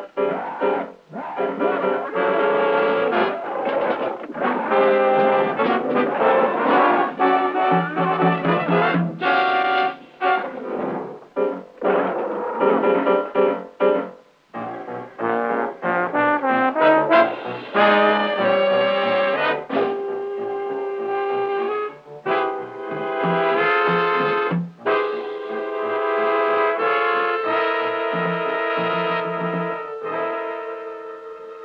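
Brass-led orchestral film score: short, broken phrases of changing notes, giving way in the second half to longer held chords.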